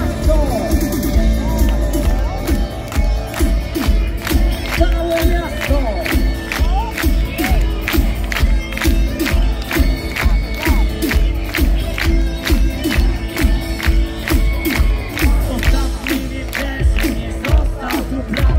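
Rock band playing live through a concert PA with a steady drum beat and heavy bass, heard from within the audience. The crowd cheers and shouts along over the music.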